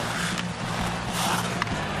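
Ice hockey arena sound: crowd noise with skates scraping the ice and a few sharp clicks of sticks and puck, over a steady low hum.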